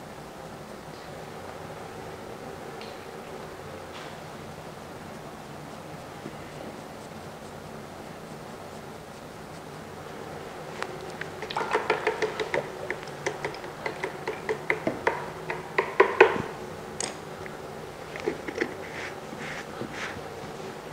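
Faint steady room hum, then from about halfway a run of quick light taps and clicks, several a second, from a paintbrush and jars being handled on a wooden worktable, with a few more clicks near the end.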